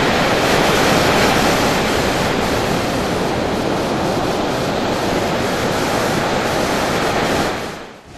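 Ocean surf breaking and washing up a sandy beach: a steady, loud rush of waves that fades out near the end.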